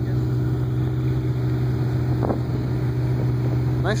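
Engine of a 1940 Ford Deluxe four-door sedan running at a low, steady idle as the car rolls slowly past, a deep even drone.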